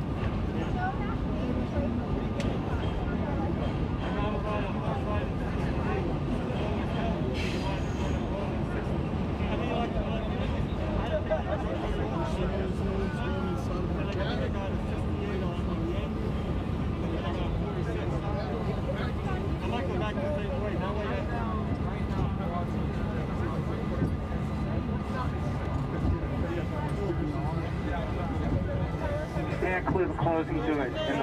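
Inside a stationary R32 subway car: indistinct passenger chatter over a steady low hum from the train, with the hum dropping away about 25 seconds in.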